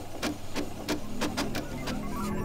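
Desktop printer printing and feeding out a page, making a run of sharp mechanical clicks, roughly four a second.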